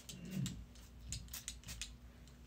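A few quick, faint spritzes from a hand-held hair mist spray bottle sprayed onto hair.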